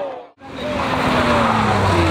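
A BMW E36 rally car's engine held at steady high revs while its tyres squeal as it slides through a corner. The sound drops out briefly near the start.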